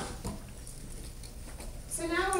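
Quiet room tone with a steady low hum, and a few soft footsteps of a person walking across a stage floor.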